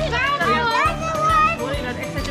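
Children's high voices and laughter over background music with a steady beat.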